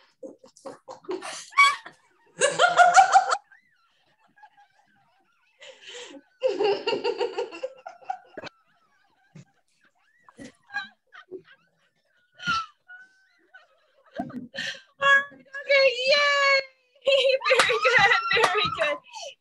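A woman and a young girl laughing in the deliberate, hearty way of laughter yoga, in several separate bursts with quiet gaps between, joining into near-continuous laughter over the last few seconds.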